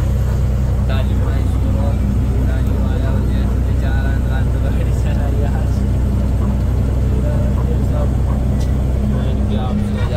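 Truck diesel engine running steadily while driving, a constant low drone heard from inside the cab.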